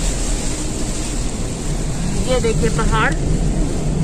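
Car driving in heavy rain, heard from inside the cabin: a steady rumble of road and engine noise with rain on the car. A brief voice-like sound comes a little past halfway.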